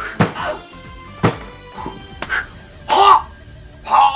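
Background music with four sharp whacks of punches landing, about a second apart, the last one the loudest.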